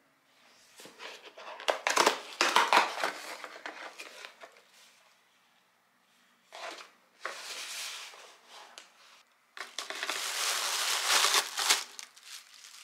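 Cardboard shipping box torn open by hand along its perforated tear strip, loudest about two seconds in. Then two more bursts of rustling as the flaps are opened and the plastic-wrapped contents crinkle.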